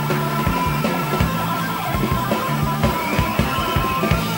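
Punk rock band playing live: electric guitar, bass and drum kit, with a steady drumbeat and a moving bass line.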